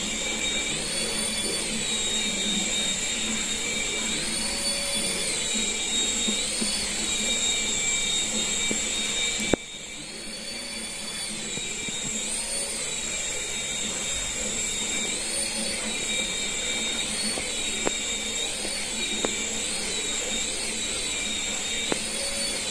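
Small toy helicopter's electric motors and rotors whining steadily as it hovers, the pitch rising and falling back every second or two. A single sharp click comes about halfway through, and the whine is briefly quieter after it.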